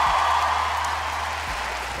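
Studio audience applauding, a dense patter of many hands that gradually fades.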